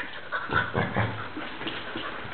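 Husky-type dog making a quick run of short, irregular noises at close range, clustered in the first second or so.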